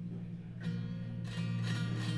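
Double-neck hybrid Sky Guitar strummed twice, a low chord ringing on between the strokes.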